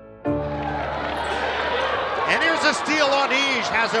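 A music chord sounds about a quarter second in and fades over the murmur of a gym crowd. From about two seconds in, the game sound of a basketball court comes up: repeated sneaker squeaks on the hardwood and a ball being dribbled.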